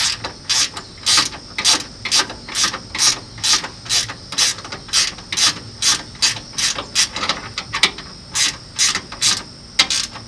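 Hand socket ratchet clicking in short, even strokes, about two a second, as a bolt on the radiator mounting is turned.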